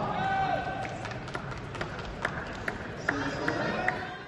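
Arena crowd hubbub with voices, broken by a series of short, sharp knocks about half a second apart in the second half.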